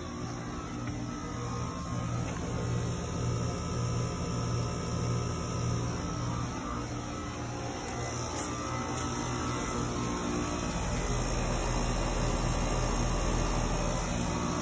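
Outdoor heat pump unit running: a steady low hum of the compressor and fan. A deeper low rumble comes in near the end.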